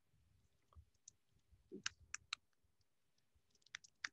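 Faint, sparse keystrokes on a computer keyboard: a few scattered taps about two seconds in and again near the end.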